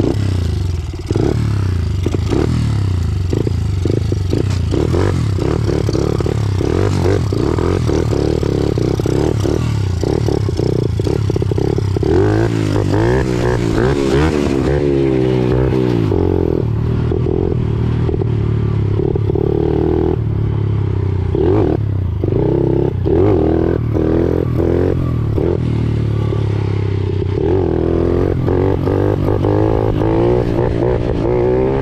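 Honda CRF50 pit bike's small four-stroke single-cylinder engine running while riding, its note rising and falling with the throttle, most noticeably about halfway through and again near the end. Frequent short knocks and rattles sound over it.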